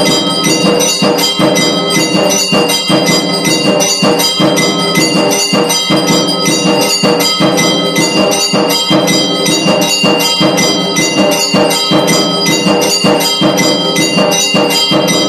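Hindu temple bells ringing rapidly and without pause during the aarti, many overlapping strikes blending into a loud, steady clangour.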